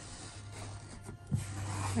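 Quiet background music with a low, steady tone, under the soft rubbing of hands pressing folded interfacing flat on a wooden floor, with one light thump a little over a second in.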